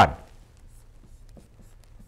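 Faint scratching and a few light ticks of a stylus writing on a screen.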